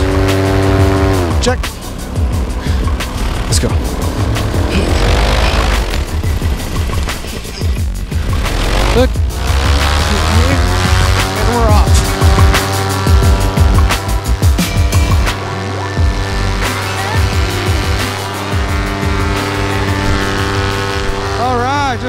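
Vittorazi Moster 185 two-stroke paramotor engine running at high throttle for a foot launch. Its pitch drops about a second and a half in, climbs again between about five and ten seconds, then holds steady as the paramotor climbs away.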